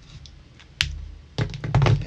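Copic markers being handled: one sharp plastic click a little under a second in, then a quick run of loud clicks and knocks, as markers and their caps are set down and picked up.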